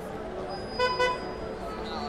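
Car horn giving two short toots in quick succession about a second in, over busy street traffic and crowd noise.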